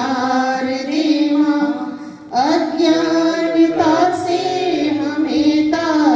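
Two women singing a Hindu devotional bhajan to the goddess Saraswati into handheld microphones. The phrases are long held notes, with a short break for breath about two seconds in.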